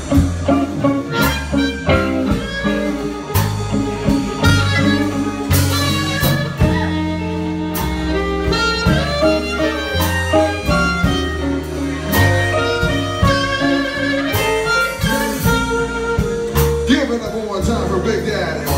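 Live blues band playing: a harmonica lead over electric guitar, electric bass and drums, with a steady beat.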